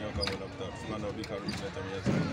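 A man speaking, with a few faint clicks or knocks behind his voice.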